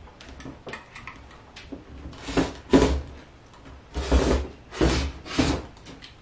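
Rotary cutter drawn along an acrylic ruler through layered cotton fabric on a cutting mat: about five short scraping cutting strokes in the second half, after a few faint clicks of handling.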